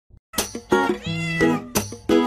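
A cat meowing over a hip-hop beat at the start of a song, with one drawn-out meow about a second in.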